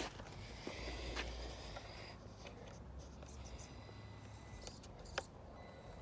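Faint handling noise: a few light clicks and knocks, the sharpest about five seconds in, over a low rumble. A faint steady high whine comes in just after that click.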